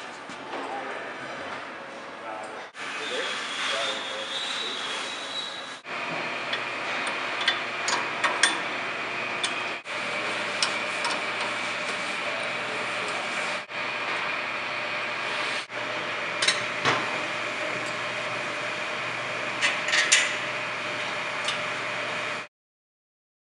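Metal clinks and knocks from clamp plates and brackets being fitted onto a sprayer's wheel mount, over a steady machine hum. The sound breaks off for a moment at each of several edits.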